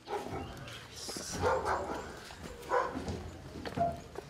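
A dog barking a few times.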